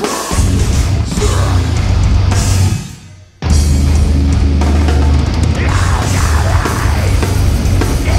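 Live deathcore band playing heavy, down-tuned guitars, bass and drums in a stop-start breakdown. About three seconds in the band cuts out for a moment, then crashes back in, with harsh screamed vocals over the riff in the second half.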